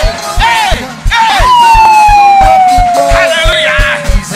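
Live gospel praise music with an even, fast drum beat. A man singing into a microphone holds one long note that slides slowly downward for the last three seconds.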